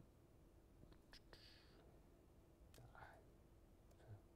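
Near silence: room tone with a few faint clicks and a faint whispered murmur.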